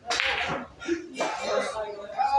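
A pool cue strikes the cue ball with a sharp crack just after the start, the loudest sound here. Voices of people around the table follow.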